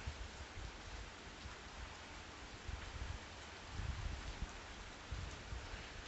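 Steady rain falling, heard as an even hiss, with occasional soft low bumps.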